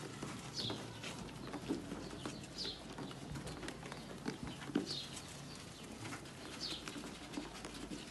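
Sheep eating at a metal feed trough, with faint scattered crunching and knocks. A bird calls four times in short, falling high chirps, about two seconds apart.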